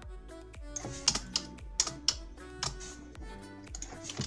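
Typing on a computer keyboard: irregular keystrokes in quick runs, the sharpest clicks about a second in. Soft background music with held notes plays underneath.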